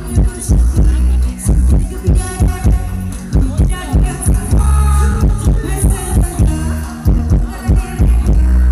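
Loud amplified live Thai ramwong band music with a heavy, pulsing bass beat under melodic lines.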